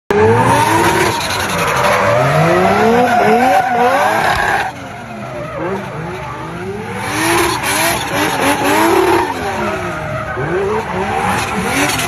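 Nissan 350Z drift car sliding through a corner, its engine revving up and down again and again with tyres squealing. It is louder for the first few seconds, eases about halfway through, then builds again.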